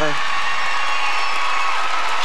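Arena crowd applauding and cheering steadily in a standing ovation for a finished figure-skating program.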